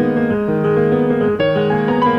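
Classical-style piano passage in a progressive rock recording: sustained notes and chords that change several times, with a clear change about one and a half seconds in.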